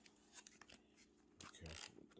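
Faint handling of a cardboard product box with a plastic window: a few light clicks and scrapes of fingers on the box.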